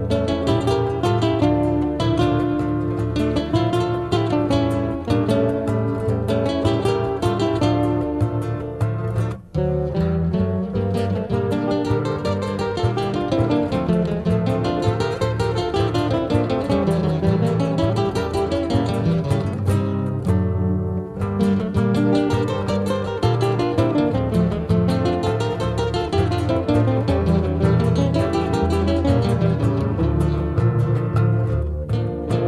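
Instrumental passage of a southern Brazilian nativist song, led by plucked acoustic guitar playing a busy melodic line, with a brief break about nine seconds in.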